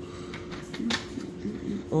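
A few light clicks and knocks from handling a plastic cooking-oil bottle at the stove, with one sharper click about a second in.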